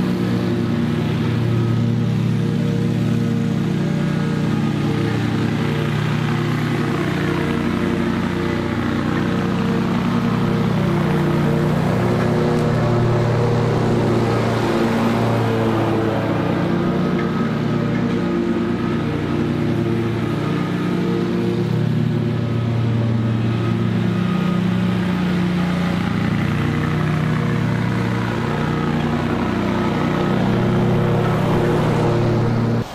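Stand-on zero-turn commercial mower running steadily with its blades cutting thick, overgrown grass, the engine working under load; it grows a little louder as the mower passes close by around the middle.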